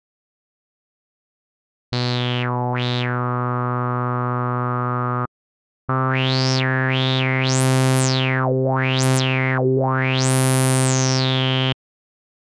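ReaSynth sawtooth-wave synth note at low C (C3), played through a Moog-style four-pole low-pass filter. Its cutoff is swept by hand so a resonant peak glides down and up through the tone. Two held notes: the first from about two seconds in for three seconds, the second from about six seconds in to near the end, swept up and down several times.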